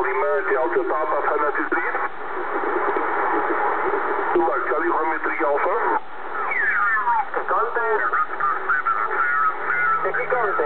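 Kenwood TS-690S transceiver's speaker receiving 10-metre upper-sideband voice signals over band hiss, in the narrow tinny sound of a sideband receiver. About two-thirds of the way in, the voices slide down in pitch as the tuning knob moves the receiver up the band.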